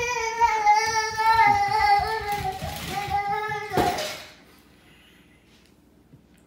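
A toddler singing in long, wavering high notes with no words. The singing stops about four seconds in, with a short burst of noise.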